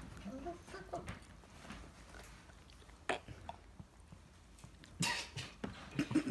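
Faint close-up mouth sounds and small clicks from a man holding a pickle to his lips, with a short, loud, noisy burst about five seconds in as he starts to bite.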